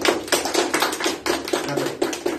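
A small group of people applauding, hand claps overlapping in a quick, uneven patter.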